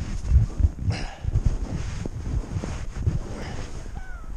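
Wind buffeting a handheld action camera's microphone: an irregular, gusty low rumble, with rustling and handling noise.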